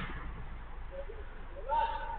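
Distant voices of men on a five-a-side football pitch, with one short call near the end, over a steady low background rumble. There is a single thud right at the start.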